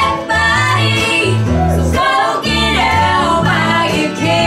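Live country band playing: female vocals over strummed acoustic guitar and a bass line that steps from note to note.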